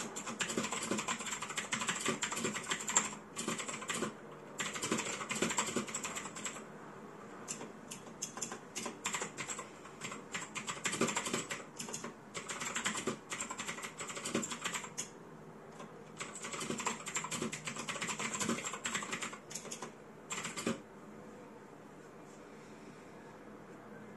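Typing on a mechanical keyboard: quick runs of key clicks in bursts, broken by short pauses, stopping about a second before the end.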